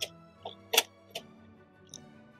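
Small hard items clicking and clacking as a container of pens and loose fountain-pen nibs is rummaged through: about five short sharp clicks, the loudest just under a second in. Soft background music plays underneath.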